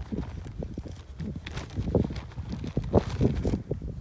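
Irregular soft thumps and rustles of footsteps through pasture grass, over a low rumble of wind on the microphone.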